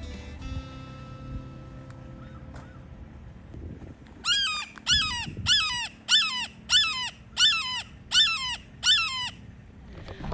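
Red-shouldered hawk calling a series of nine loud, down-slurred screams, about two a second, beginning about four seconds in. Before the calls, music fades out.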